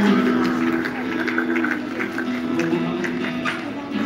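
A choir singing with a live band, held notes over a steady beat, heard from the audience in a large hall.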